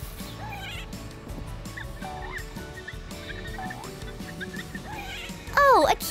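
Cartoon squirrel sound effect: short, high, squeaky chirps, some rising and some falling, every second or so over background music, with a much louder sliding call near the end.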